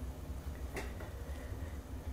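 Steady low background hum with one faint click a little under a second in.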